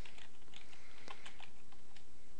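Computer keyboard being typed on: a quick run of light key taps as a command is entered.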